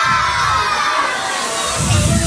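A crowd of children shouting and cheering together, with the dance music's bass mostly dropped out; the music thumps back in just before the end.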